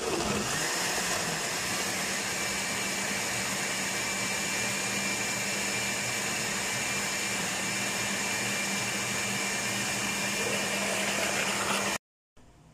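Osterizer countertop blender switched on and running steadily, blending a liquid fruit-and-water smoothie. The motor noise starts suddenly and holds an even level, with a thin high whine joining about two seconds in.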